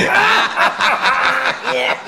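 A voice laughing in short, repeated syllables, a mock-sinister snickering chuckle.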